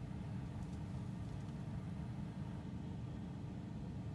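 Steady low rumble of background noise inside a car's cabin, with no distinct sounds.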